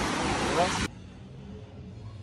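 Surf breaking and washing up a sandy beach: a loud, even rushing with faint voices in it, which cuts off abruptly a little under a second in, leaving a low steady hum.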